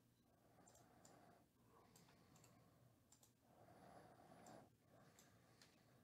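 Near silence: faint room tone with a few scattered soft clicks.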